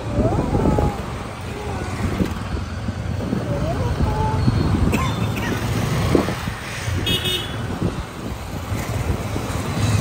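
Street traffic heard from a moving motorcycle: a steady low rumble of engine and wind on the microphone, with a short high horn toot about seven seconds in.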